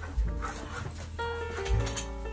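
Background music with held notes and a steady bass line. Over it a husky gives a few short whimpers.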